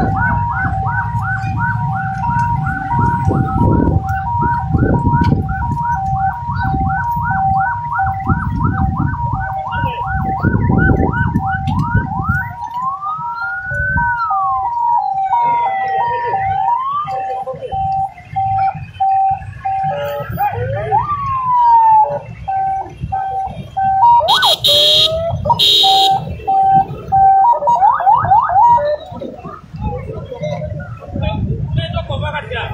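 Several vehicle sirens sounding at once, as from the escort of an official convoy. For about the first twelve seconds a fast yelping siren runs over a two-tone hi-lo siren, with a low rumble beneath. After that, slower wailing rises and falls come in while the two-tone carries on, and there are two short loud blasts a little past the middle.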